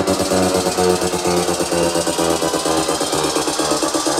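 Electronic dance music in a DJ mix, with a fast run of evenly repeated hits.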